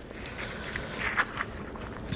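Soft scraping and squishing of ripe avocado flesh being cut in its skin and scooped out, with a few light clicks from the utensil.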